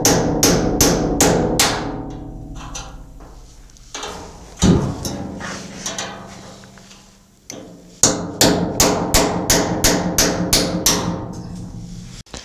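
Hammer blows on a cold chisel cutting rivet heads off a sheet-steel blast cabinet. There is a quick run of strikes, about three a second, at the start and another in the last four seconds, with a single blow a little before midway. The steel cabinet rings on after the blows.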